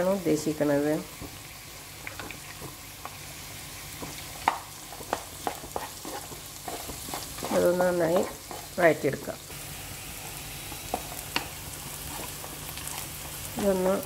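Chopped onions, green chillies and curry leaves sizzling in hot oil in a nonstick pan, with a spatula stirring and scraping through them and a few sharp clicks against the pan. The onions are at the sautéing stage.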